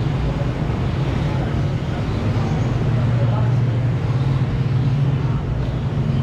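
Steady low rumble of background machinery or traffic with a continuous low hum, and faint voices in the background.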